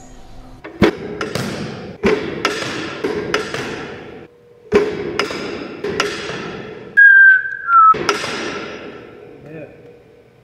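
A two-wheel football passing machine firing footballs, with a series of sharp, echoing thwacks, often in pairs about half a second apart, over a steady hum. About seven seconds in, a loud whistle-like tone lasts about a second and drops slightly at its end.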